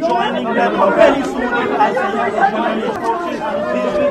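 Several voices talking over each other at once, with a woman crying among them.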